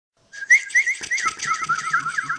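Bird-like whistled chirping: a rapid string of short, high notes, several a second, each sliding up or down in pitch. It starts about a quarter second in.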